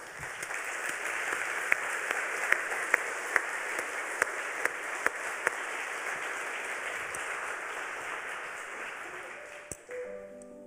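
Audience applause, steady, with a few sharper single claps standing out in the first half and slowly fading toward the end.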